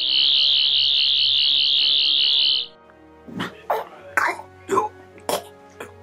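Sonic screwdriver sound effect: a high warbling whine that cuts off after about two and a half seconds. Then a run of short coughs, over quiet background music.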